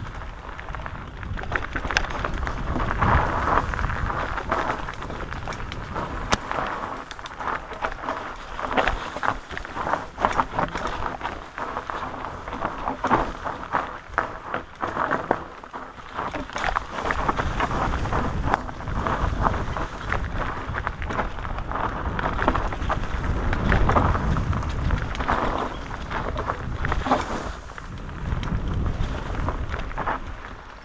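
Mountain bike riding fast down a dirt forest singletrack: knobby tyres rolling over packed earth and dry leaves, with frequent knocks and rattles from the bike jolting over roots and bumps. A low rumble of wind on the camera microphone runs underneath.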